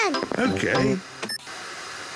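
A brief high electronic ding about a second in, followed by the steady hiss of television static.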